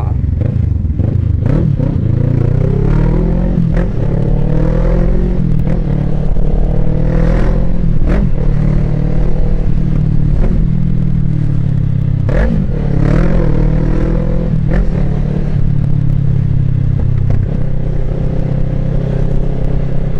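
Motorcycle engine heard from the rider's seat, its pitch rising and falling several times as the throttle opens and closes, over a steady low rumble.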